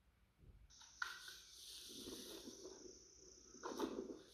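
Faint outdoor field sound: after near silence, a steady high insect trill starts under a second in and runs most of the way through, with faint scuffing sounds and a brief louder rustle near the end.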